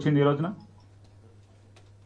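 A man speaking into a microphone stops about half a second in, leaving a pause with a low steady hum and one faint click.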